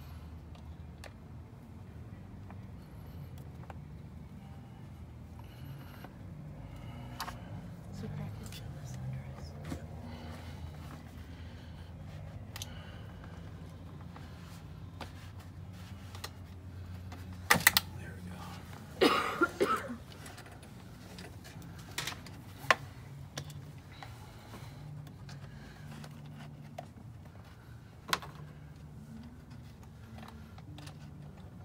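Hand tools and plastic trim being worked in a car's engine bay: scattered light clicks and knocks from a screwdriver and ratchet on the plastic fuel-rail cover. A short clatter of several loud, sharp knocks comes a little past halfway.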